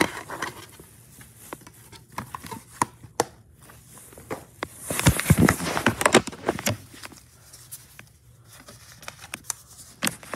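Clicks and rustling from handling a plastic DVD case and its disc, with a louder spell of handling noise and thuds about five to seven seconds in.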